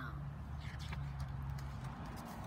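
A steady low hum with a soft rustle of a picture-book page being turned.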